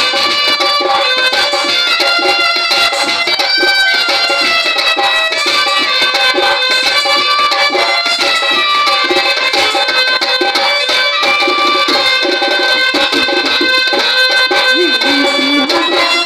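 Live folk dance music: a reed wind instrument plays a held, ornamented melody over a steady hand-drum beat.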